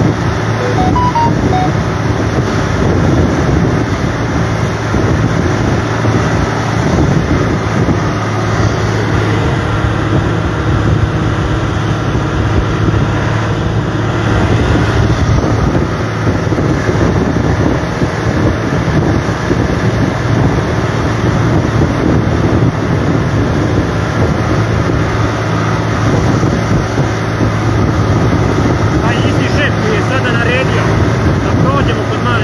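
Tractor's diesel engine running steadily while driving, a constant low drone heard from inside the cab, with road and wind noise.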